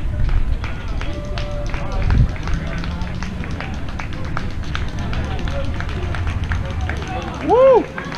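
Outdoor crowd ambience: a steady low rumble with scattered light ticks and faint distant voices. A man's voice speaks loudly for a moment near the end.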